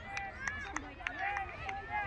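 Distant voices of children and adults calling and shouting across a playing field, many overlapping short calls with no clear words. A few sharp clicks come in the first second, over a steady low rumble.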